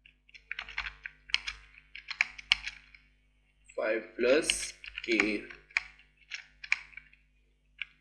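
Typing on a computer keyboard: an irregular run of key clicks as code is entered, with a short break around the middle.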